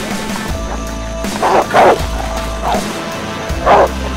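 Military working dog barking: four loud, short barks, the third weaker, over background music with a steady low pulse.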